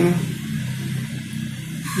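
A steady low hum, with a pen writing on paper.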